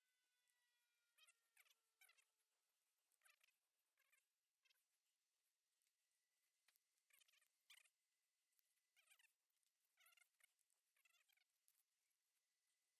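Near silence, with about a dozen very faint, short, high-pitched chirps scattered through.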